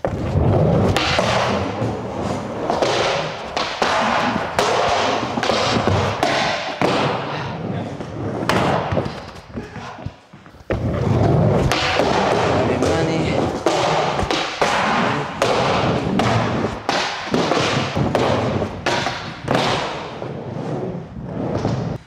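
Skateboard rolling on wooden ramps and obstacles with a run of sharp clacks and thuds from pops, landings and board hits. There is a short lull about ten seconds in before the rolling and impacts start again.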